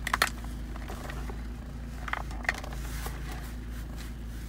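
A steady low hum in a UAZ Patriot's cabin, with a few small clicks and scrapes from wiring and a connector being handled at the centre console: a short cluster at the start and two single clicks about two seconds in.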